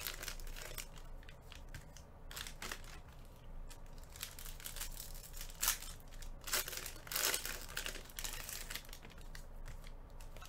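Trading-card pack wrappers crinkling and tearing while packs are opened and the cards handled, in short irregular rustles.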